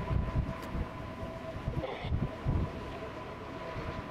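Steady high whine of aircraft turbine engines running on the ground, with gusts of wind buffeting the microphone, strongest in the first two seconds or so.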